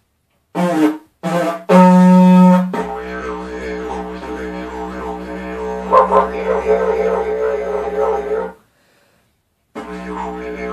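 Homemade didgeridoo made from a cardboard fabric-bolt tube with a beeswax mouthpiece. It starts with two short blows and a louder, brighter blast about two seconds in, then settles into a steady drone with shifting, wah-like overtones. The drone stops about 8.5 seconds in and starts again near the end.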